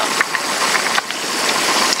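Steady background noise of a car ride, heard as an even hiss on an old, noise-reduced audio tape, with no voices.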